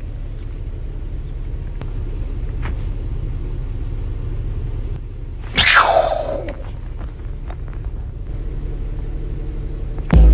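Steady low rumble inside a vehicle cabin. About five and a half seconds in, a brief sound sweeps down in pitch.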